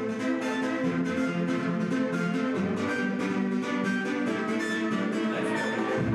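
Live electropop instrumental played on a keyboard synthesizer and laptop: held, plucked-sounding synth chords over fast, even ticking percussion. The bass drum is dropped out for this passage.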